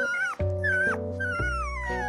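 A young Rhodesian ridgeback puppy whimpering: three high squeals that rise and bend down, the last a long falling whine. Background music with held chords plays underneath.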